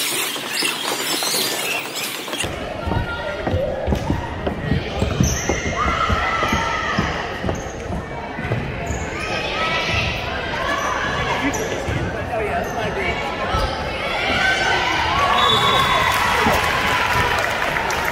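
Indoor volleyball game: repeated ball hits and thumps with crowd and player voices, echoing in a large gym.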